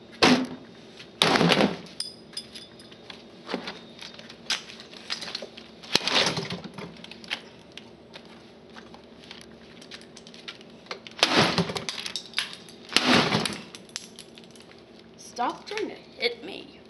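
A series of loud, sudden clattering knocks of hard plastic as an old computer keyboard is picked up and handled. The biggest clatters come about a second in, around six seconds, and twice more late on.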